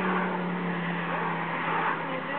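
Road and engine noise inside a moving car: a steady drone with a low engine note that eases slightly lower.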